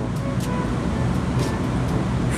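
Steady low rumbling background noise with no distinct event.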